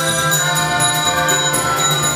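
A student band playing a tune together on accordion, recorders, harmonica, a bar percussion instrument and drums, with a steady beat.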